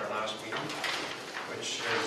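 Sheets of paper rustling as pages are turned, twice, over quiet talk in the room.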